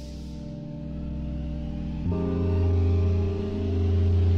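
Lofi hip hop music: sustained, warm chords without drums, swelling in and changing chord about two seconds in.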